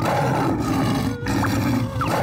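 Cartoon lion roaring, a loud drawn-out roar sound effect.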